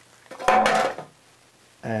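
A brief clatter of hard objects about half a second in, lasting about half a second.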